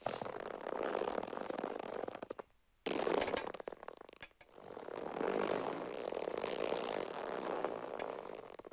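Sound-effect track of a rendered rope-and-knot animation playing back: a dense, crackly noise that drops out briefly, restarts with a few sharp clicks and some high ringing, then swells again and fades near the end.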